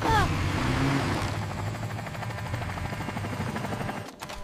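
Cartoon helicopter rotor sound effect: a steady whirring over a low hum that slowly fades, cut off suddenly at the end.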